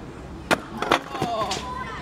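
A stunt scooter and its rider hitting a concrete ramp after a failed trick. A loud clatter about half a second in, more clacks just before a second, then a scrape.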